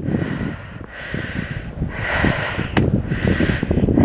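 A person breathing audibly close to the microphone, three hissing breaths about a second apart, over a low rumble of wind on the mic.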